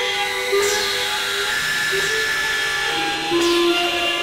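Experimental synthesizer music: held electronic tones that shift pitch every second or so. A falling swish comes at a sudden change about half a second in and again near the end.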